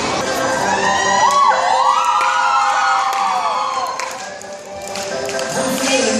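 A group of children cheering and shouting, many high voices gliding up and down over one another, fading out about four seconds in. Music starts near the end.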